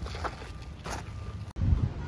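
Footsteps on a gravel path, two steps, over a steady low wind rumble on the microphone. About one and a half seconds in, the sound cuts off abruptly and a louder burst of wind rumble follows.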